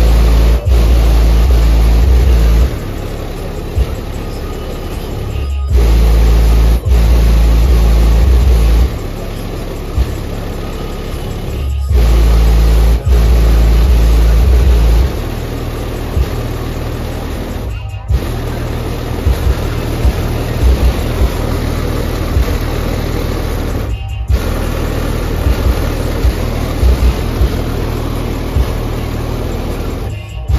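Bass-heavy music played loudly through a car stereo's subwoofers. The low bass swells into long, very loud held notes three times in the first half, then settles into shorter repeated bass hits.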